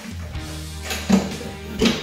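Background music with a guitar: a held low note with a couple of plucked notes.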